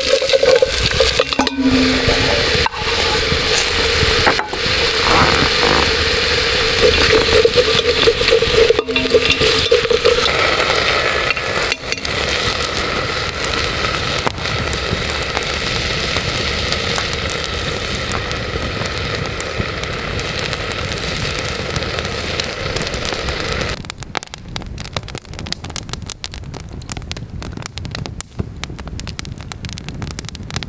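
Sliced onions frying in hot fat in an enamel pot over a wood fire: a loud, steady sizzle with some stirring and scraping. About 24 seconds in the sizzle stops, leaving the popping crackle of the burning wood.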